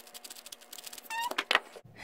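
A 3x3 speedcube being turned quickly by hand: a rapid run of sharp plastic clicks, with a brief high-pitched tone a little after a second in.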